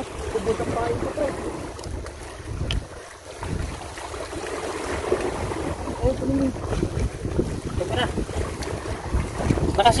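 Wind buffeting the microphone in uneven gusts, with faint voices now and then.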